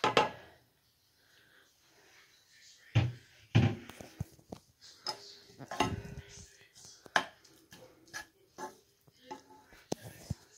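Chopped onions tipped from a plastic bowl into a pot of oil with a clatter, then a wooden spoon stirring them and knocking against the pot several times.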